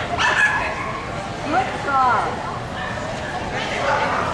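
A dog yipping: a few short, high calls that bend up and down in pitch, about one and a half to two seconds in, over background chatter.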